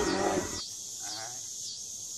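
A loud, rough shout cuts off about half a second in. Insects keep up a high pulsing chirr about twice a second, with a faint brief voice around a second in.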